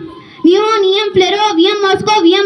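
A girl's voice reciting chemical element names very fast into a microphone, at a high, nearly level chanting pitch. It breaks off briefly at the start and resumes about half a second in.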